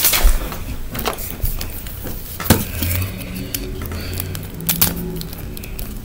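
Scattered light clicks and taps of small plastic toy pieces being handled on a wooden table, a few sharp ones standing out, with a faint steady hum underneath in the middle seconds.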